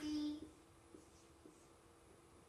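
Marker writing on a whiteboard: faint squeaks and light taps of the tip on the board. A short held voice tone fades out in the first half second.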